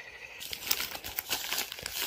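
Crinkling and rustling of a plastic bubble-lined mailer as a hand handles it and reaches inside: a continuous crackle of many small crackles.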